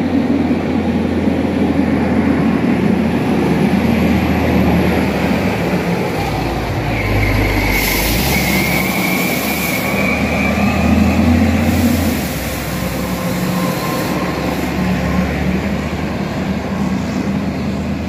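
Heavy container-hauling trucks passing close by on a gravel road, their diesel engines running with a deep rumble. A high squeal rises slightly from about seven to ten seconds in, alongside hissing bursts.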